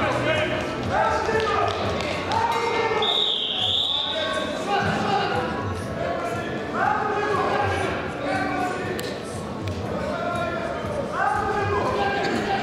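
Men shouting in a large echoing sports hall during a Greco-Roman wrestling bout, with thuds from the wrestlers' feet and bodies on the mat. A single high whistle sounds about three seconds in and lasts about a second.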